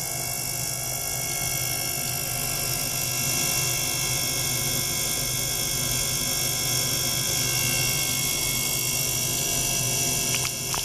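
Small ultrasonic bath running with a metal probe dipped in the water: a steady buzzing hiss with many fixed tones, the audible noise of ultrasonic cavitation in the liquid. It grows slightly louder about three seconds in.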